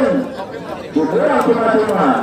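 Several people talking at once, voices overlapping in chatter that dips a little and then picks up again about a second in.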